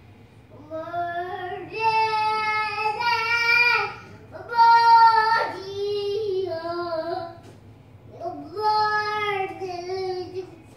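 A young child singing unaccompanied, in three long held phrases with short breaks between them.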